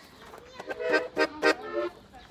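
Accordion sounding a few short chords about a second in, after a quiet start.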